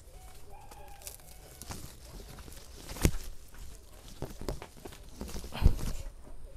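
Heavy potted bonsai trees being shifted and set down on the ground: a few dull knocks, the loudest about three seconds in and again near the end, with shuffling footsteps between them.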